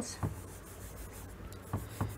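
Palm rubbing chalk marks off a chalkboard: a soft scraping hiss for about a second and a half.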